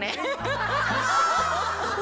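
A woman laughing through tears over background music with a repeating bass line.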